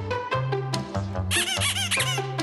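Playful intro music of short plucked notes over a steady bass line, with a rapid run of rubber-duck squeaks from a little past halfway to the end.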